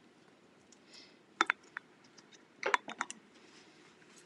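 A few light plastic clicks and taps, scattered, with a small cluster about three seconds in: a clear plastic ball ornament being handled and set upside down on a small plastic cup so its polycrylic coating can drain.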